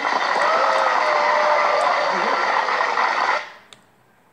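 Sound of an old TV clip playing on a phone: a voice over a dense, noisy wash, cutting off suddenly about three and a half seconds in.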